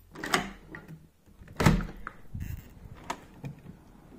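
A back door being opened: a few clunks and knocks from its handle and latch, the loudest about a second and a half in.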